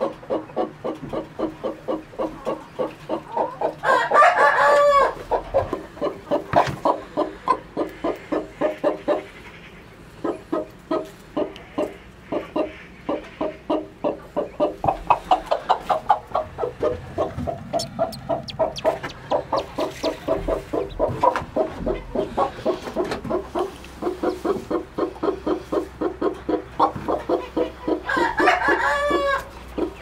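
Broody hen clucking in a rapid, steady run of about three to four clucks a second, with a louder drawn-out call twice, about four seconds in and near the end.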